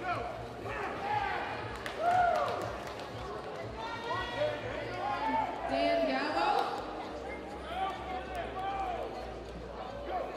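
Several people talking and calling out at once in a large hall, with a few short knocks among the voices.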